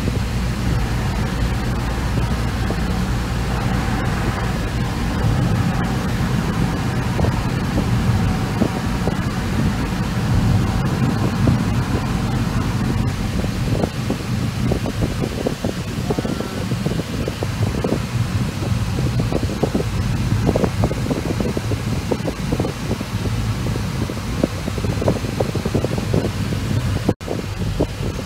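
Steady low drone and rumble of a car driving, heard from inside the cabin, with road and ventilation hiss on top. The sound drops out briefly just before the end.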